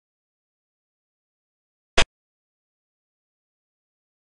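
A single short, sharp click about two seconds in: the xiangqi board program's sound effect for a piece being moved. Otherwise complete silence.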